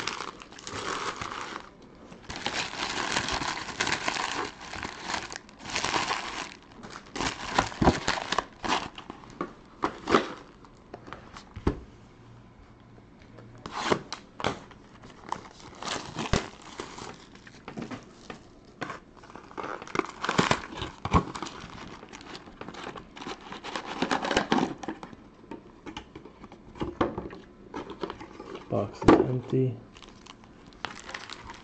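Plastic wrapping crinkling and tearing as a sealed box of trading cards and its wrapped packs are opened by hand, in irregular bursts with short pauses and a few sharp clicks.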